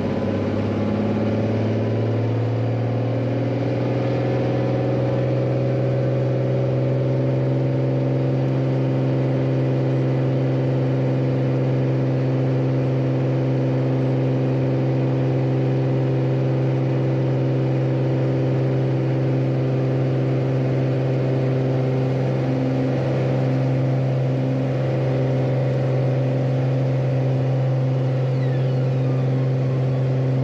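Beechcraft Bonanza S35's six-cylinder Continental IO-520 engine and propeller, heard from inside the cockpit, rising in pitch to full takeoff power over the first couple of seconds, then running steadily at full power through the takeoff roll.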